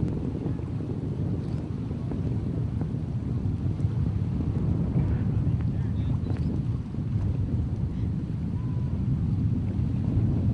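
Distant low, steady rumble of the Space Shuttle's rocket motors climbing away, reaching the viewer after a long delay across miles of open ground.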